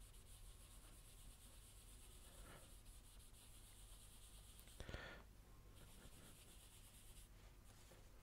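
Very faint rubbing of graphite on paper as a drawing's background is shaded in, with a soft swish about two and a half seconds in and a brief, louder bump about five seconds in.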